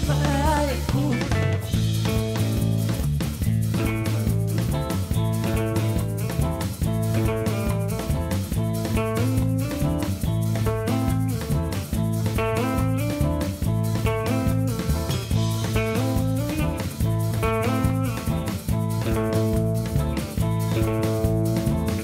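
Tuareg desert-blues band playing live: electric guitar picking a quick, repeating melodic riff over bass guitar and a drum kit keeping a steady beat. A sung line trails off about a second in, leaving an instrumental passage.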